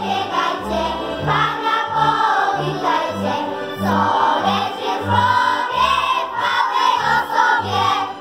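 A children's choir singing together, over an instrumental accompaniment with a steady, regular bass beat.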